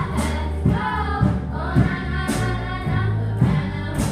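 A children's ensemble strumming nylon-string classical guitars in a steady rhythm, about two strums a second, under a cello's low sustained notes, while girls sing the melody together.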